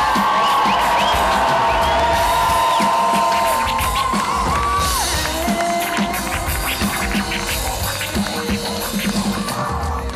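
Live music with a crowd cheering: one voice holds a long high note for about four seconds, then it falls away, over drums and crowd noise.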